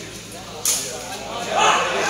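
Crowd chatter with a single sharp smack about two-thirds of a second in: a sepak takraw ball being kicked. Voices grow louder near the end.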